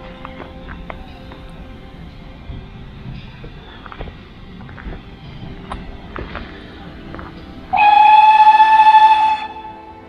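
Background music with a steam locomotive whistle blowing one steady blast of almost two seconds near the end, the loudest sound here.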